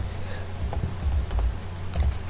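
Computer keyboard keys clicking as a short command is typed one key at a time, about one keystroke every half second, over a low steady hum.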